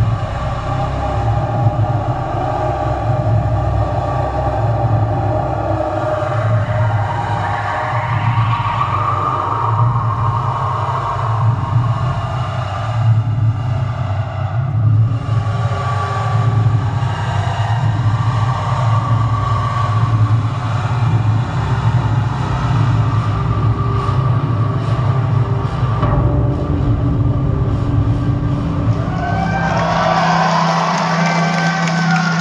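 Live synthesizer music: a dark, beatless drone with a deep steady bass rumble under long held synth pads that shift slowly in pitch.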